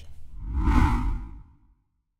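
A whoosh transition sound effect that swells to a peak just under a second in, then fades away by about a second and a half, followed by dead silence.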